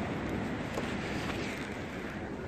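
Steady outdoor background noise, a low, even rumble and hiss with no distinct event.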